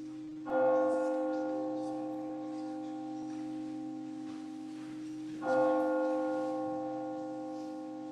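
A bell struck twice, about five seconds apart, each stroke ringing on and slowly fading, over steady held low tones.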